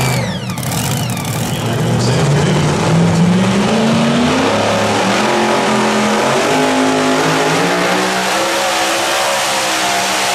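A mini rod pulling tractor's racing engine revs up as it launches a pull against the sled, its pitch climbing steadily over a few seconds and then holding at high revs under load. About half a second in, a lower steady engine note from another tractor breaks off.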